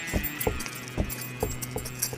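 Footsteps on a wooden floor, about five unevenly spaced steps, each with a short metallic jingle.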